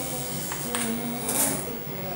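A young child humming a tune in drawn-out notes, with a metal measuring spoon clinking and scraping against a stainless steel pot: a click about half a second in and a short scrape about one and a half seconds in.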